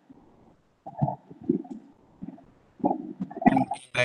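Muffled, indistinct low sounds in short bursts, heard over a video-call audio feed.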